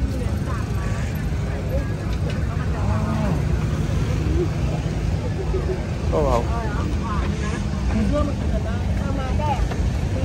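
Crowd of people talking over one another, with a steady low hum and rumble underneath.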